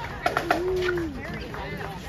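Marching-band bass drums striking a slow marching beat, with a quick cluster of three hits shortly after the start, over crowd chatter. A single held low note slides down and stops a little past the middle.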